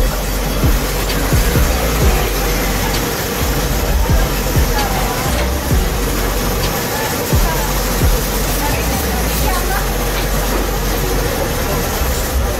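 Busy outdoor street ambience: a steady traffic rumble with background voices and music.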